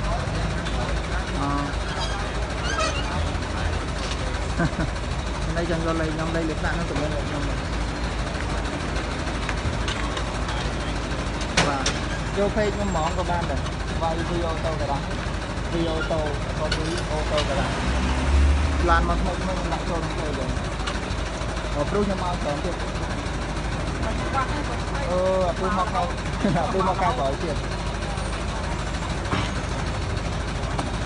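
Truck engine idling steadily, under people talking, with a couple of sharp knocks in the middle.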